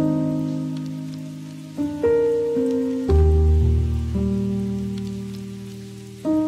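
Background music: slow, soft held chords, each fading away before the next, with a deeper bass chord coming in about three seconds in. A faint, steady patter runs underneath the music.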